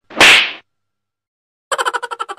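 A single loud whip-crack swish about half a second long, the sound of a punch landing in slapstick. Near the end, a fast run of short pitched pulses, about ten a second, begins.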